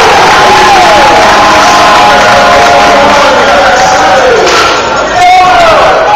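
Basketball crowd and bench cheering and shouting, with loud whoops and yells that slide down in pitch, easing off near the end.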